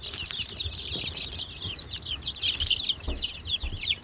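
A brood of young chicks peeping continuously: many short, high, falling cheeps overlapping one another.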